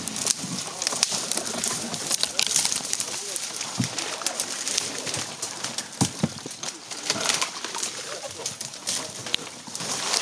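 Twigs and branches crackling and scraping against a canoe and the camera as it is pushed through a flooded thicket, with irregular clicks and a few sharper knocks, about four and six seconds in.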